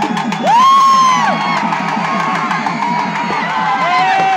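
Fast, steady festival drumming with a crowd around it. A loud rising whoop cuts in about half a second in, is held for nearly a second and falls away, and a shorter shout comes near the end.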